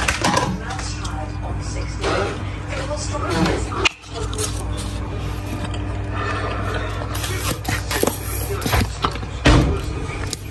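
Steady low hum of a running kitchen appliance, with scattered clicks and scrapes of plastic food tubs, plates and a sauce bottle being handled.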